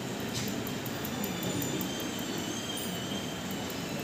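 Steady background noise of a large hall with indistinct low chatter, and a faint click about half a second in.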